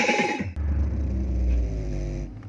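An advertising voice-over cuts off about half a second in. A deep, steady low rumble follows: a cinematic sound effect under an animated logo.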